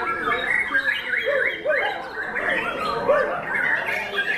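White-rumped shama (murai batu) song: a loud, fast, varied run of whistles and chirps with short arched low whistles, several birds' notes overlapping.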